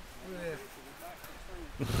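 Quiet talking, then near the end a dirt bike engine running loudly cuts in abruptly.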